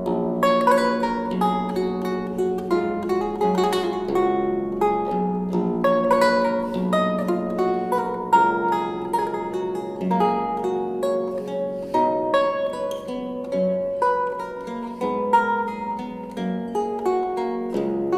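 Solo archlute playing a Baroque allemande: a steady stream of plucked melody notes and chords over ringing low bass notes.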